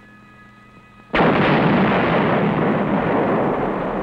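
Demolition charges blowing up a factory smokestack: a sudden blast about a second in, followed by a long, heavy rumble that fades only slowly.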